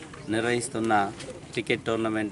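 A man speaking into a handheld microphone in short phrases.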